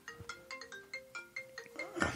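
Phone ringtone playing faintly: a quick melody of short, separate notes, several a second, as an incoming call rings before it is answered.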